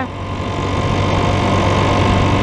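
Motorcycle cruising at steady speed on a paved highway: a steady low engine hum under an even rush of wind and road noise.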